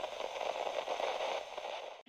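Crackling, static-like hiss, fading out near the end.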